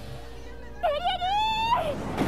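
A high-pitched, strained cry of pain from an anime character's voice on the episode soundtrack. It starts just under a second in, wavers and climbs slowly for about a second, then breaks off.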